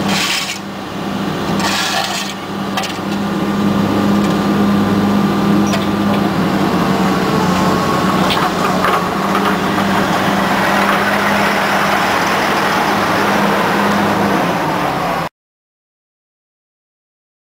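Excavator's diesel engine running with a steady low hum, heard from inside the cab, growing louder and rougher about three seconds in as the arm and swing are worked, with a few faint knocks. The sound cuts off abruptly just before the end.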